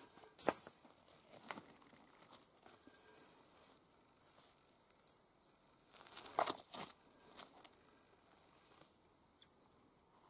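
Quartz rocks being picked up and handled over stony, leaf-littered ground: a few light knocks, scrapes and crunches of rock and fragments, the sharpest about half a second in and a cluster of them a little after six seconds.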